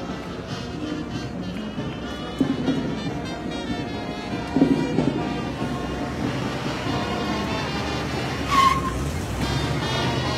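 Parade band music with brass, heard faintly through open-air ground noise, with one brief sharp high sound about eight and a half seconds in.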